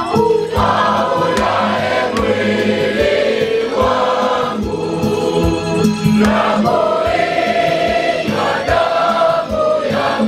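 A large group of boys singing a hymn together, accompanied by an electronic keyboard with a steady beat.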